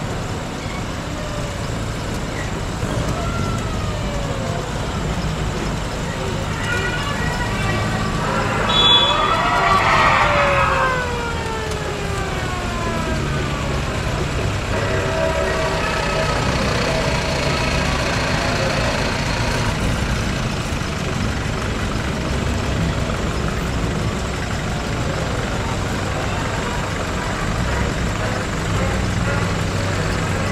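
A convoy of WWII military jeeps driving slowly past, their engines running steadily. Several engine notes drop in pitch as vehicles go by, and the loudest pass comes about nine to eleven seconds in.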